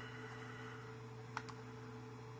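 Two quick sharp clicks about a second and a half in from the CR-10S control box's rotary menu knob, over a steady low hum.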